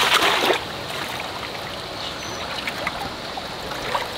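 A brief splash as a net holding a koi is dipped into a water-filled plastic stock tank, then steady running, trickling water in the tank.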